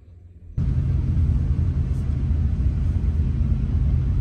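Steady low rumble of a moving vehicle that cuts in abruptly about half a second in, after a faint low hum.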